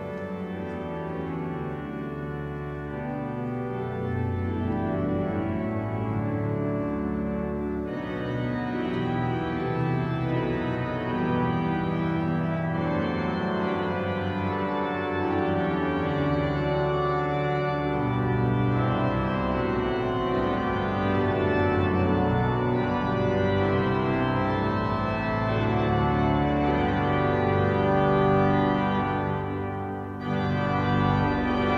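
Cathedral pipe organ playing a hymn in full sustained chords. About eight seconds in it turns brighter and fuller, and it grows gradually louder toward the end.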